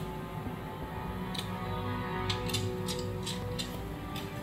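Music from a television programme playing in the room, with several brief sharp clicks in the second half.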